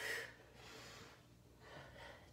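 A woman's short, breathy exhale while holding a side plank, at the very start, then quiet breathing.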